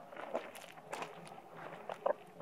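Faint, irregular footsteps crunching on gravel, a handful of short scattered steps.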